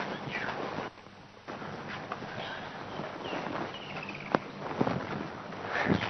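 Quiet outdoor background noise with light camera-handling sounds and one sharp click a little past four seconds in.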